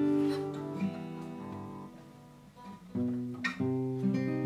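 Acoustic guitar chords: a strummed chord rings and fades away over the first two and a half seconds, then new chords are strummed about three seconds in.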